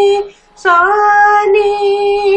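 A female voice singing the swaras of a sarali varisai exercise in raga Mayamalavagowla. She holds each note steadily, with a short break about a quarter second in and a small upward slide into the next note.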